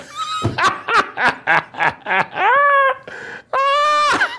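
A man's hearty laughter: a quick run of short bursts, then two long, high-pitched whooping cries.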